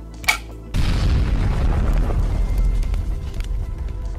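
A short sharp snap, then about a second in a sudden loud deep boom that rumbles and fades over the next two to three seconds: a film explosion sound effect, heard over background music.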